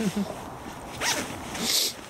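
A fabric bag being handled and zipped as hands rummage in it: two short scraping sounds, one about a second in and a louder, higher one near the end. A brief voice sound comes right at the start.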